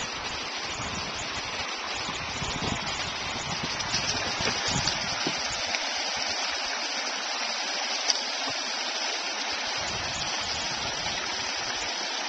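A small creek spilling over a fallen log, a steady rush of water. There is one short sharp click about eight seconds in.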